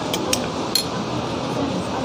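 A metal spoon and fork clinking against a plate, three or four light clinks in the first second, over steady background noise.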